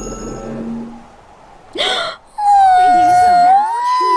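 A short gasp, then cartoon voices giving a long, drawn-out, adoring "aww" that rises and wavers at the end.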